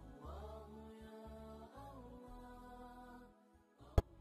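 Quiet background vocal music: a slow chanted song with long, gliding sung notes over low sustained tones. A short sharp click comes right at the end.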